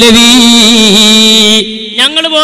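A man's voice chanting melodically, holding one long note with a slight waver that breaks off about one and a half seconds in.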